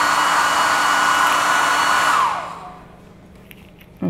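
Handheld electric hair dryer blowing steadily with a high whine, then switched off a little past two seconds in, its whine falling in pitch as the motor spins down to quiet.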